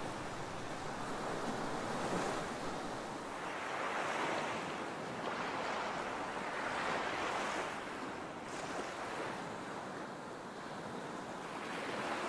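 Gentle ocean surf washing onto a sandy beach, the rush of water swelling and easing in slow, irregular waves.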